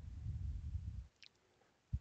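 A low closed-mouth hum from a man's voice lasting about a second, then a faint click.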